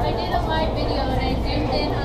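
Indistinct chatter of several people talking over a low, steady hum.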